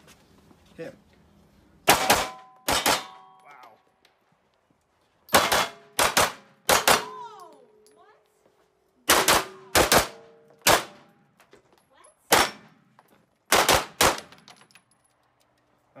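Handgun fired about a dozen times in uneven strings, some shots in quick pairs. Several shots are followed by a short metallic ring from steel targets being hit.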